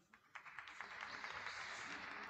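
Applause: many hands clapping in a brief burst that starts about a third of a second in and swells quickly.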